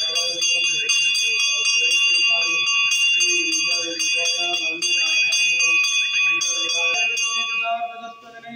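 Metal temple bell rung rapidly and continuously during the oil abhishekam, its bright ringing tones struck again and again, stopping about seven and a half seconds in. Voices of the crowd are heard beneath it.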